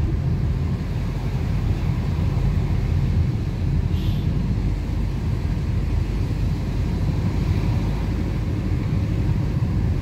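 Steady low rumble of a car in motion, heard from inside the cabin: engine and road noise.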